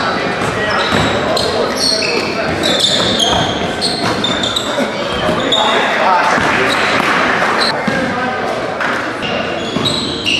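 Basketball game in a gym: the ball bouncing on the hardwood floor, sneakers squeaking in short high-pitched chirps, and a steady hubbub of players' and spectators' voices.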